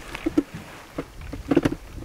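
A few short, sharp knocks and clicks of hands handling fishing tackle in an aluminium boat.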